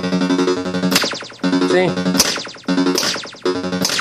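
Williams Sorcerer pinball machine's electronic background sound, a steady low droning tone, broken three times by a sharp clack as the flipper is worked, each one followed by a short ringing and a brief dip before the drone comes back.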